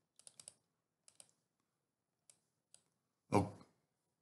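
Computer keyboard and mouse clicks: a quick run of about four clicks, then a few scattered single clicks.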